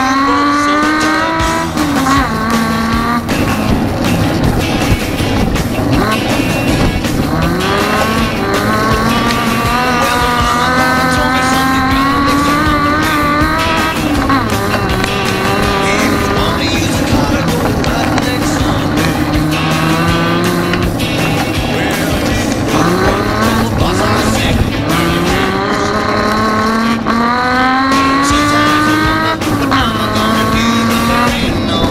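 Autocross race car's engine heard from inside the cockpit at race pace: the revs climb again and again and drop sharply at each gear change or lift for a corner. Loud throughout.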